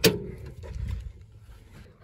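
A sharp click of the door latch as the driver's door of a 1972 Toyota Hilux pickup is opened, followed by about a second of soft, low noise as the door is swung open.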